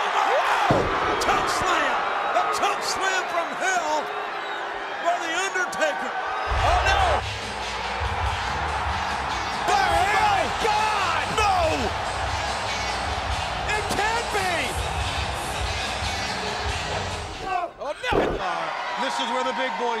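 A mixed wrestling soundtrack: slam impacts with voices. Music with a heavy bass comes in about six seconds in and cuts off near the end.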